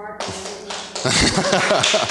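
An audience laughing, with scattered clapping, swelling loud about a second in.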